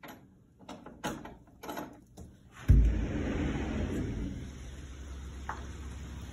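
A few clicks as a sliding glass door and its screen door are unlatched and handled, then a sudden low thump as the door opens about halfway through, followed by a steady low rush of outdoor air and wind on the microphone.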